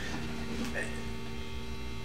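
Steady electrical hum from an idling electric-guitar rig: a Stratocaster's single-coil pickups through a Fender Blues Junior tube amp, with no strings sounding.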